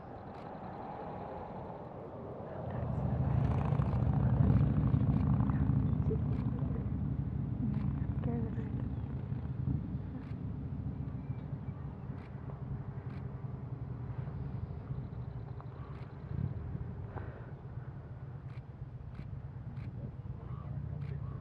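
A motor vehicle's engine hum swells about three seconds in, then slowly fades, with scattered faint ticks throughout.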